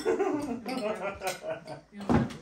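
Indistinct voices talking, with no clear words.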